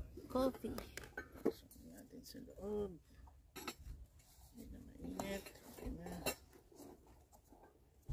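Scattered clicks and light clinks of camp cutlery and dishes being handled on a wooden table, with a plastic spoon stirring a drink in a paper cup.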